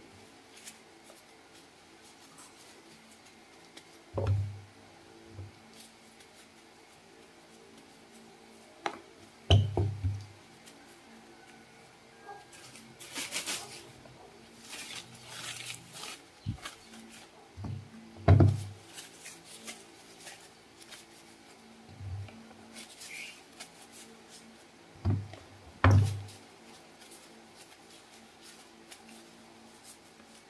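Peeled green mangoes handled and set down one by one in a plastic basin while being dried with a paper napkin: a few scattered dull thumps of fruit on the basin, with soft paper rustling in between.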